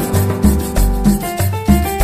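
Latin dance band music with a repeating bass line and sustained keyboard notes, over a rasping scraped-percussion rhythm.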